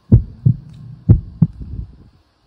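Heartbeat sound effect: two low double thumps (lub-dub), the pairs about a second apart, for a pounding heart (두근두근).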